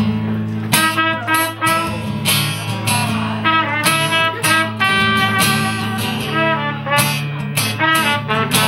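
Live band playing an instrumental break: acoustic guitar strumming under a melodic lead line of separate sustained notes that comes in about a second in.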